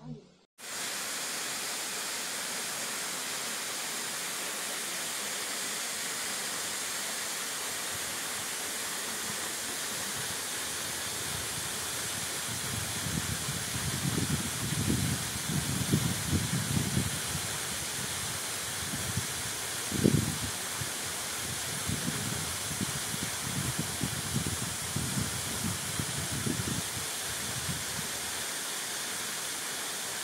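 Falling Foss waterfall: a steady, even rush of falling water, with irregular low, muffled bumps through the middle part.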